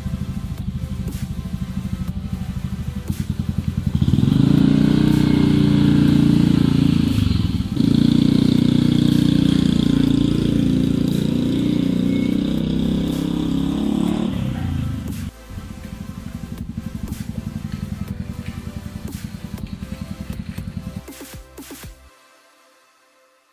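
Motor scooter engine running, much louder for about ten seconds in the middle as the scooter is ridden off, dropping back to a quieter pulsing sound near the end. Background music plays under it and fades out at the close.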